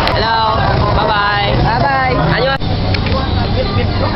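Voices talking in a busy market. About two and a half seconds in, the sound cuts abruptly to street noise with a steady low vehicle-engine rumble.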